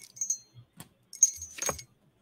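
A metal pendulum on a chain jingling and clinking in the fingers, a few light metallic chinks in two small clusters, the second one about a second in.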